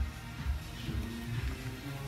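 Background music with a low bass line.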